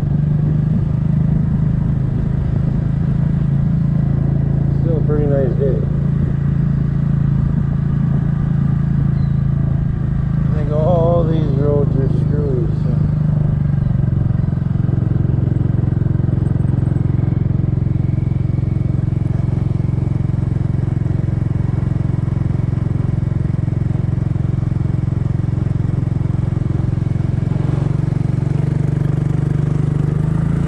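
2007 Kymco 250cc scooter's single-cylinder four-stroke engine running steadily while riding at low speed. Its pitch drops slightly about halfway through.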